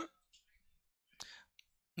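Near silence, broken once about a second in by a faint mouth click and a short breath picked up by a close head microphone.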